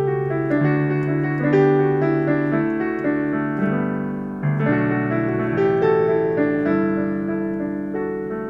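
Digital piano played solo with no singing: sustained chords under a melody line, with a new, louder chord struck about four and a half seconds in.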